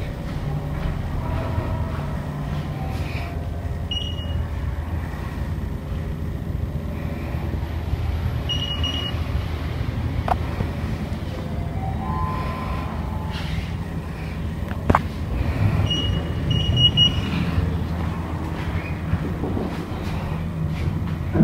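Steady low hum and rumble of an elevator lobby and lift, with short high electronic beeps from the lift's buttons about four and nine seconds in and a few more around sixteen to seventeen seconds. A short rising chime around twelve seconds marks a car arriving, and there are a couple of light clicks.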